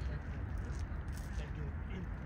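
Distant low rumble of a Qantas Airbus A380's engines as the four-engined jet climbs away after takeoff, with faint voices in the background.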